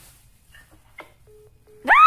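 A phone speaker clicks, then plays two short beeps of a steady tone: the call-ended tone after the other end hangs up. Near the end comes a loud, sharply rising cry.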